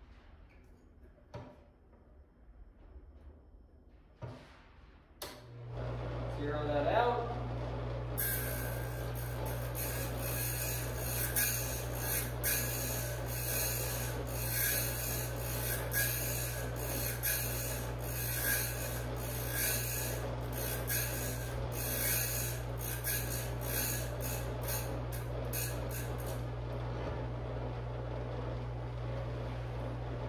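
Electric piston ring gap grinder. After a few handling clicks its motor starts with a steady hum about five seconds in. From about eight seconds the abrasive wheel grinds the end of a top compression ring in repeated rasping passes, widening the ring gap for a boosted engine. The grinding stops near the end while the motor keeps running.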